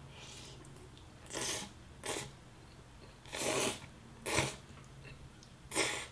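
A person eating Jollibee sweet-style spaghetti close to the microphone: about five short, noisy mouth sounds of slurping and chewing a few seconds apart, over a faint steady low hum.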